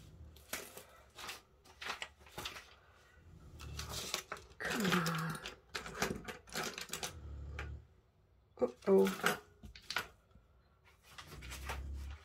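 Objects being handled and moved about on a craft desk while searching for scissors: scattered clicks and taps with a few dull thumps. Brief bits of voice come through about five and nine seconds in.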